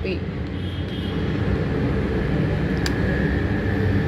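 Steady low rumble of vehicle noise. A thin steady high tone comes in about halfway through, and a single light click sounds near the three-second mark.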